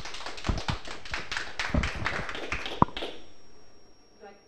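Audience applauding: a dense patter of hand claps with one sharper clap near the end, fading out about three seconds in.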